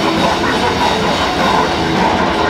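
Death metal band playing live and loud: distorted guitar and bass over fast, dense drumming, with a vocalist's low growled vocals through the microphone.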